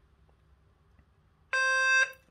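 Near silence for about a second and a half, then a loud electronic beep, a single steady tone with many overtones, from the Serene CentralAlert alerting system as the portable flasher pairs with the main hub, signalling that it has been registered.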